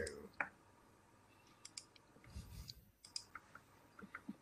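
A few faint, scattered clicks over quiet room tone, with a couple of soft low thuds.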